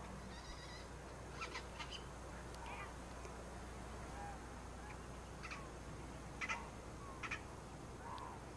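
Faint outdoor ambience over a steady low hum, with a handful of short bird calls scattered through.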